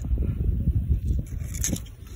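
Low, uneven rumble on the microphone from wind or handling, with a few brief rustles near the end as the camera is swung across the plants.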